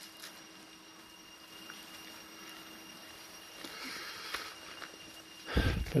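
Quiet forest ambience with a few faint steady high tones and light rustling. Near the end comes a brief louder bump as a hand takes hold of the plastic ribbon tied to the wooden stake.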